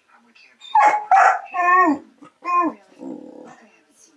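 Dogs play-fighting: a dog barks four times in quick succession, then gives a lower growl near the end.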